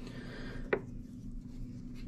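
Quiet handling of a sheet-metal bathroom heater fan assembly, with one light click about three-quarters of a second in over a faint steady hum.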